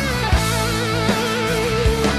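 Rock recording in an instrumental section: a lead electric guitar holds notes with string bends and a wide, even vibrato over steady drums.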